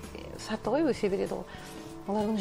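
A woman's voice in a melodic phrase that rises and falls in pitch about half a second in, with music underneath.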